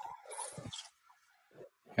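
Faint, breathy laughter: soft airy exhales in the first second, then a pause and a short voiced laugh at the end.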